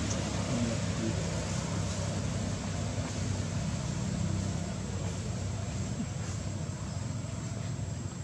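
A steady low drone with an even hiss over it, like an engine running somewhere off, continuous throughout with no clear breaks.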